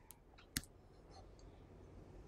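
A single sharp click about half a second in, with a fainter click just before it, in an otherwise near-silent room.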